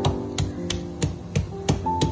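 Background music with a plucked guitar over a wooden pestle pounding garlic and ginger in a wooden mortar, about three knocks a second.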